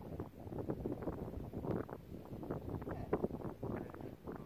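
Wind buffeting the microphone in irregular gusts, mixed with uneven scuffing noises.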